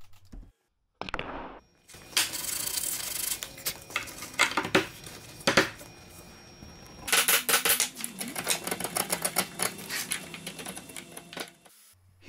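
A hand chisel cutting into a wooden pool-table rail: a run of sharp clicks and scraping strokes, turning into a quick, dense clatter about seven seconds in.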